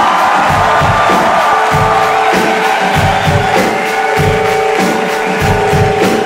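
Live rock band playing without vocals: a steady kick-drum beat about every 0.6 s under long held notes, with the crowd cheering, strongest near the start.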